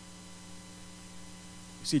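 Steady electrical mains hum: a low, even drone of two or three fixed tones. A man's voice starts just at the end.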